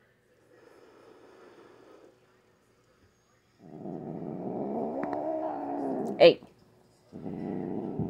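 Domestic cat growling: a faint low growl, then a long, louder growl that rises and falls in pitch for about two and a half seconds, and another beginning near the end. An agitated, frightened cat protesting while her claws are clipped.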